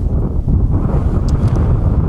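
Wind buffeting the camera's microphone: a loud, low, unbroken rumble.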